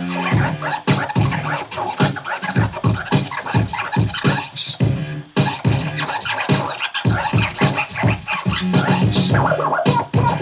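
DJ scratching a record on a turntable, the sample cut into fast stuttering strokes by hand movements on the record and mixer fader, with a brief break about five seconds in.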